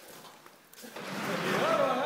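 Men's voices, several at once, calling out and talking over one another. They start about a second in, after a quieter first second.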